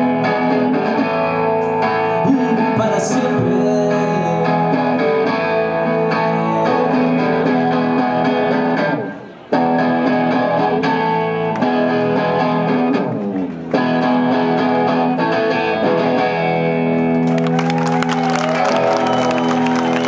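Acoustic guitar playing sustained strummed chords to close a song. The sound drops away twice for a moment and is struck back in sharply. Audience applause and cheering come in near the end.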